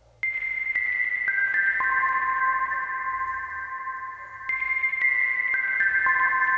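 A short synthesizer melody from an Ableton Operator synth, played through a reverb with a long decay. Four clean single-tone notes step down in pitch, each ringing on under the next. The phrase starts again about four and a half seconds in.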